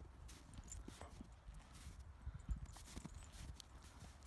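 A husky gnawing on a chew held between its front paws: faint, irregular clicks and crunches of teeth working the chew.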